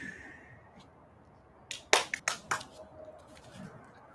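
A breath let out through the mouth, fading away, then a quick cluster of sharp knocks and rustles about two seconds in as a person scrambles up from an exercise mat on the floor.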